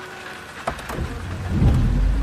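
Steady rain. About two-thirds of a second in there is a sharp click, and then a deep rumble swells loud over the last second.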